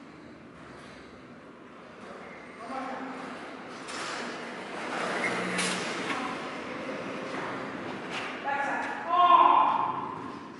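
Faint, indistinct talking echoing in a large hall, with a few sharp knocks, one about four seconds in and others near six and eight seconds.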